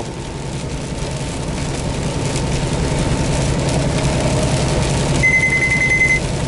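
Inside the cab of a Kenworth T680 semi-truck at highway speed on a wet road: a steady engine drone with tyre and spray noise, slowly growing louder. About five seconds in, a single high electronic beep lasts about a second.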